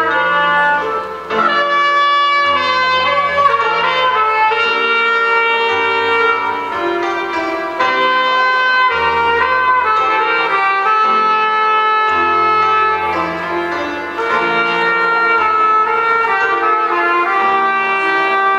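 Trumpet playing a melody in long, held notes, with live grand piano accompaniment.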